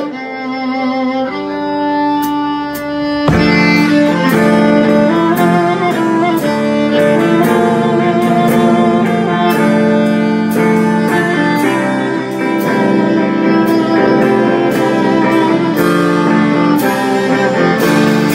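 Live Celtic folk metal: a fiddle opens the tune on its own. About three seconds in, the full band joins with electric guitar and drums, and the fiddle carries the melody over them.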